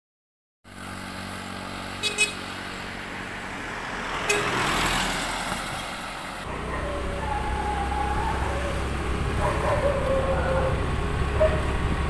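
Light road traffic on a near-empty street: a car driving past, with a brief horn-like toot about two seconds in. From about six and a half seconds a louder, steady low rumble of vehicle noise takes over.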